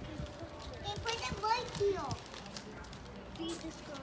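Young children's voices, with chatter and calls as they play, and a high falling call about two seconds in.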